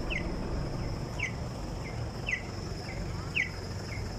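A bird calling a short, falling chirp about once a second, four louder chirps with fainter ones in between, over a faint steady high whine and low background rumble.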